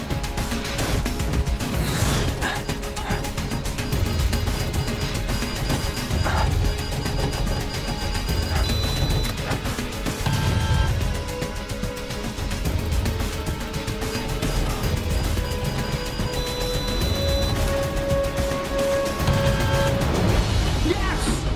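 Dramatic film score with long held notes, layered over heavy low-pitched crashing sound effects from the jet action.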